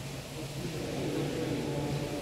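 Steady low mechanical hum filling a large filter hall at a water treatment plant.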